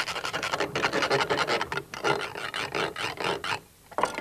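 Hand saw sawing quickly with short, rapid back-and-forth strokes, then stopping shortly before the end.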